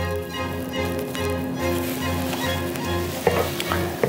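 Background instrumental music with a steady beat, over a faint hiss.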